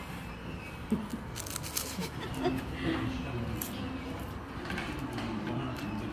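Soft crackles and clicks of flaky, crisp pastry being torn and eaten, over low background voices.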